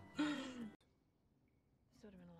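A person's short, breathy sigh, falling in pitch, as a laugh dies away; then near silence.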